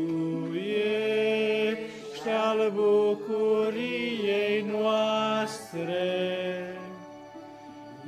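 Yamaha electronic keyboard playing a slow hymn introduction in sustained chords that change every second or two.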